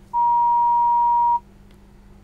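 A single steady electronic beep at about 1 kHz, lasting a little over a second, on the phone line to a reporter. It marks a link that did not connect.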